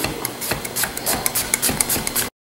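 A Kasumi Japanese chef's knife tapping a wooden chopping board as it slices a vegetable with a rocking motion: a quick, even run of sharp clicks, about seven a second.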